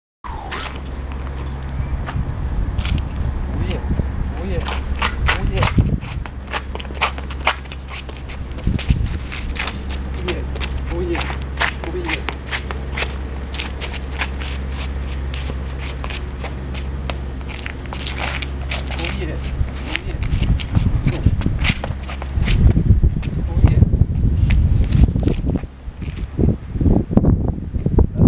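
Sneakers scuffing, sliding and tapping on concrete pavement in quick, irregular strokes during shuffle dancing, over a steady low hum that stops about three quarters of the way through.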